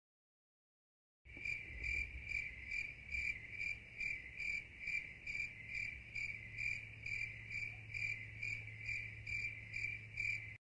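Cricket chirping sound effect, the stock 'awkward silence' gag: a high chirp repeating about two and a half times a second over a low hum. It comes in suddenly out of dead silence about a second in.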